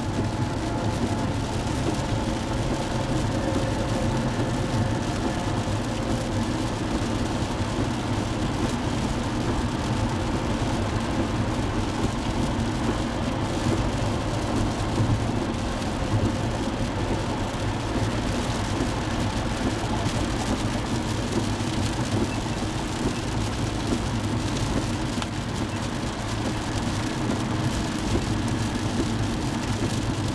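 Steady road noise heard from inside a moving car's cabin in rain: tyres on wet pavement, the engine's low hum and rain on the car, with no clear change throughout.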